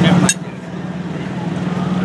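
A voice breaks off with a sharp click about a third of a second in. After it comes a steady low mechanical hum under faint street noise, slowly getting louder.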